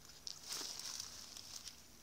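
Leaves of chilli pepper plants rustling softly as a hand brushes through them.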